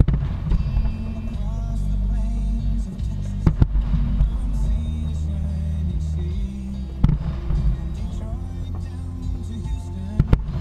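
Music playing under the booms of aerial firework shells bursting: one as it starts, two close together about three and a half seconds in, and another about seven seconds in.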